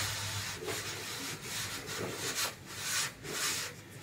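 Aluminium straightedge worked back and forth along the wet cement plaster of a concrete sunshade's edge, a rasping scrape in repeated strokes about every half second to second.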